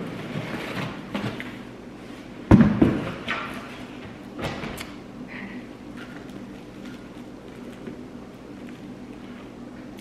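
Plastic scoop digging potting soil out of a plastic storage tote, with a loud thump about two and a half seconds in and a few lighter knocks after it. After that comes the soft sound of soil being poured into a plastic seed tray.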